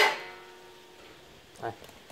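A metallic clang from the sheet-metal case of a Pioneer SA-8800II stereo amplifier being handled, its ringing fading away over about a second.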